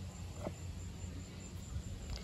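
Quiet outdoor background with a faint, steady insect trill, crickets, and a single soft click about half a second in as the grips are handled.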